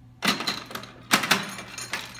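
A penny running down through a 1926 Jennings Rockaway coin-op trade stimulator, clattering against its spring-loaded rocking bars: a burst of metallic clicks about a quarter second in, a louder clatter about a second in, and a last click near the end.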